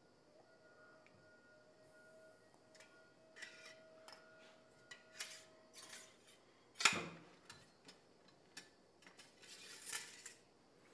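Quiet handling of a Ruger Precision Rifle and its cleaning gear on a padded bench mat: scattered light clicks and taps, with one sharper knock about seven seconds in as the rifle is set down.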